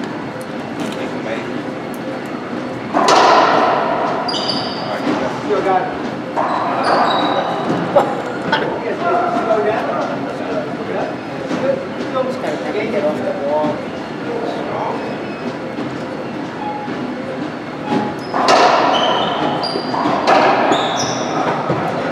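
Racquetball play in an enclosed court: sharp echoing smacks of racquet on ball and ball on walls, with sneakers squeaking on the hardwood floor. It comes in two bursts, one about three seconds in and one near the end, with murmured voices between.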